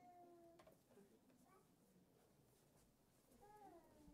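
Near silence after a choir's final held chord dies away in the first half-second, then a few faint mewing calls, the last one rising and falling near the end.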